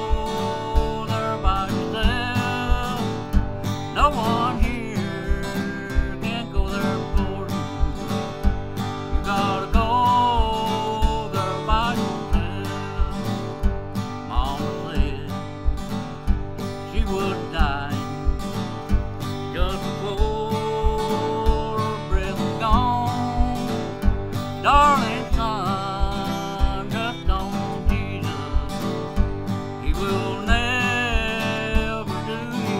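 Yamaha acoustic guitar strummed in a steady country-gospel rhythm, with bass notes falling evenly on the beat.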